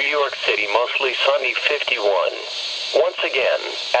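Speech only: a voice reading the weather broadcast, heard through a Midland NOAA weather radio's speaker.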